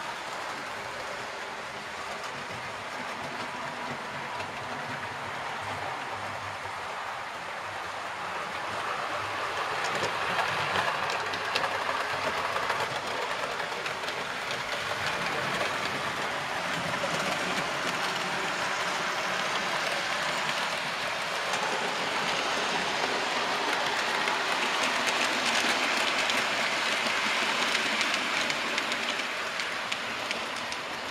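Model railway train running along the track: a steady rolling rattle of small wheels on the rails with fine clicks, growing louder about ten seconds in and again near the end.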